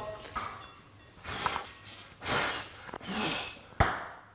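Three short breathy exhalations from people close by, followed by a single sharp click near the end.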